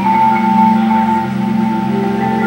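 Percussion ensemble playing sustained chords on marimbas and other mallet instruments, the low notes sounded with rapid repeated strokes.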